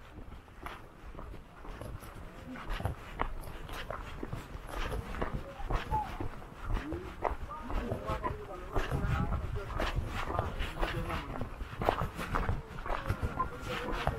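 Footsteps on a dirt road with people's voices talking in the background, no words clear enough to make out.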